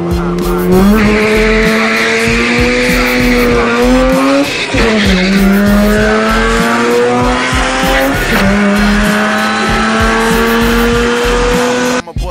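Mazda RX-8's two-rotor rotary engine heard from inside the cabin on a drag run: held at high revs, then launching about a second in and climbing in pitch, with two upshifts where the pitch drops sharply, about four and a half and eight seconds in.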